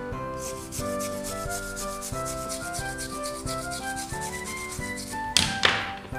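An old toothbrush scrubbing a small circuit board wet with thinner, in quick, even strokes, cleaning rust and dirt off it, over background music with piano-like notes. A short, louder burst of rasping noise comes a little after five seconds in.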